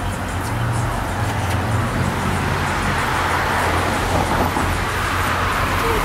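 Chevrolet Camaro ZL1's supercharged V8 idling with a steady low rumble, a little stronger for a second or so near the start, over passing road traffic.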